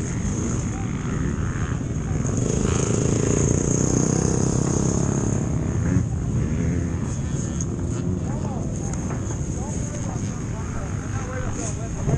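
Yamaha motocross bike's engine running steadily at low revs as the bike rolls slowly along.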